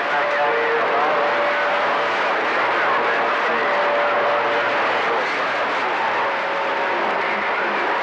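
CB radio receiver on channel 28 hissing with skip-band static, a steady rushing noise with a few faint whistles that come and go, and weak, unintelligible voices buried in it.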